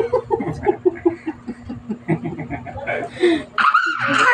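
People laughing in a quick run of short pulses, followed near the end by a louder, higher-pitched burst of voice.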